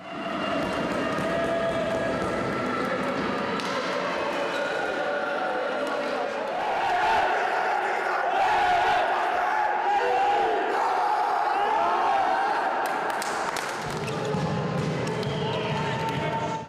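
A team's voices shouting and cheering together in a reverberant sports hall, loudest in the middle. A few sharp claps or slaps come near the end.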